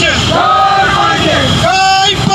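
A crowd shouting protest slogans: raised voices in a rhythmic chant, each call held briefly and then dropping, repeating about once a second.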